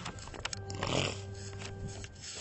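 A man's short throat-clearing snort about a second in, after a few light clicks and rustles of a Bible page being turned.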